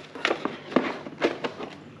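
A handful of light knocks and scrapes as a handheld Topdon ArtiDiag 500S scanner is lifted out of its cardboard box tray.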